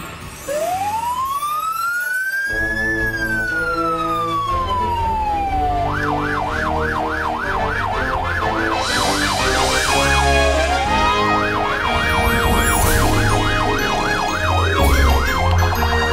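Electronic police siren: one slow wail rising and falling, then a fast yelp of about three or four sweeps a second, broken once by a short rise midway, switching to a quicker warble near the end. Background music with a beat plays underneath.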